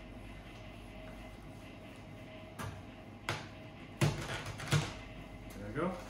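A knife being pushed through a raw chicken's breastbone and knocking on a plastic cutting board: four sharp knocks about two thirds of a second apart, over a steady low hum.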